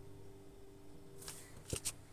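Quiet rustling and scuffling of a cat batting a small toy mouse on a carpet, with a couple of sharp clicks near the end, over a faint steady hum.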